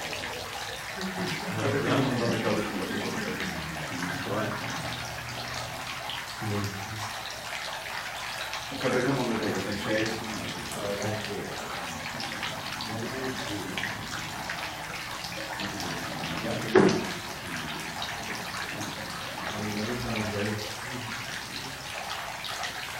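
Faint, indistinct voices talking on and off over a steady hiss of background noise, with one sharp knock about 17 seconds in.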